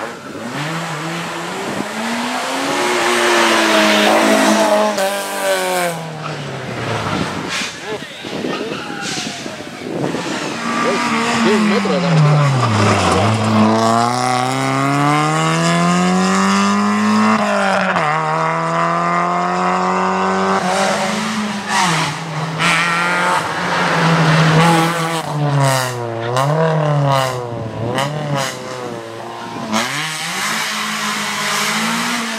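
Rally car engines revving hard on a stage, several cars one after another. The pitch climbs through each gear, drops sharply at the gearshifts and dips when the cars brake for corners.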